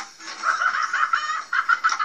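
Rapid, repeated cackling from a cartoon soundtrack, with music behind it, heard through a TV speaker.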